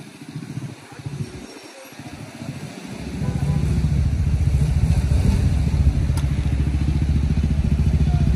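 A vehicle engine comes in about three seconds in and runs loud and steady after that: a low drone made of fast, even firing pulses.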